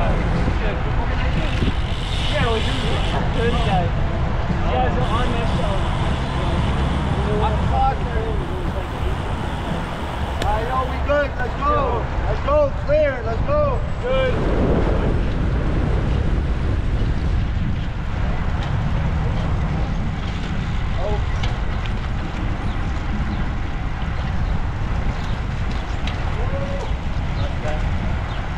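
Wind rushing over an action camera's microphone while riding a bicycle in traffic: a steady low rumble throughout. About halfway through comes a brief run of short pitched sounds that rise and fall.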